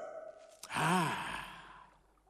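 A cartoon alligator character's long, breathy sigh of delight, starting about half a second in and fading away over about a second.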